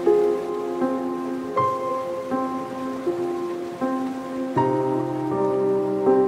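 Slow, gentle solo piano melody, one soft note about every three-quarters of a second, with a lower bass note joining and held near the end, over a steady hiss of ocean surf.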